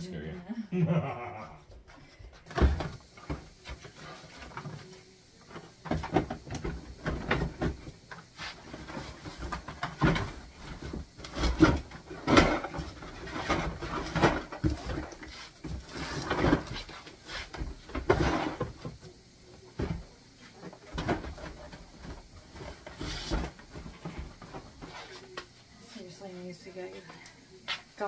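Household items being rummaged through and sorted into a cardboard box: repeated knocks, clatters and rustles as things are picked up and dropped.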